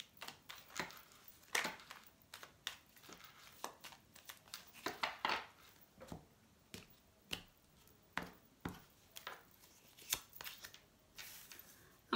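A small deck of baralho cigano (Lenormand-style) cards being shuffled by hand: a string of soft, irregular slaps, flicks and taps of card against card.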